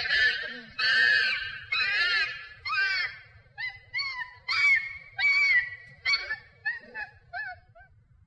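Chimpanzee screaming: a string of high calls with arching pitch, about one and a half a second, getting shorter and fainter until they stop shortly before the end.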